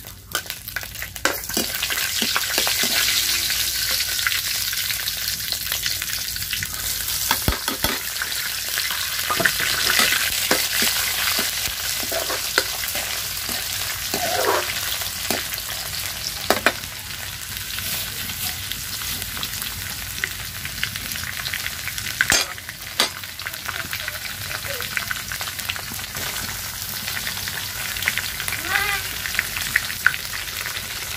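Food frying in hot oil in an iron karahi (wok) over a wood fire: a steady sizzle that swells about a second in. A steel ladle scrapes and clinks against the pan as it is stirred, with one sharp knock a little past the middle.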